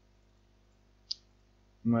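A single computer mouse click about a second in, against near silence.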